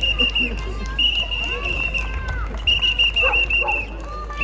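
A high, steady whistle tone sounds three times, each lasting about half a second to a second and wavering at its end, over chatter from a crowd of children.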